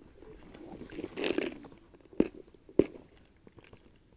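A clear plastic lure box being handled and opened: rustling and rattling of plastic, then two sharp plastic clicks about half a second apart.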